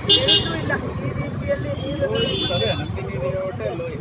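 A woman speaking into a cluster of reporters' microphones over steady street traffic rumble. Two short high-pitched sounds stand out, one at the very start and one about two seconds in.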